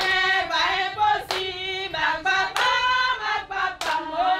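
A group of women singing a hymn together in unison, with a hymn line meaning 'all things are possible with my Father'. Three hand claps land on the beat about a second and a quarter apart.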